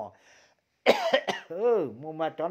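A person speaking, with a short pause near the start before the voice comes back in abruptly.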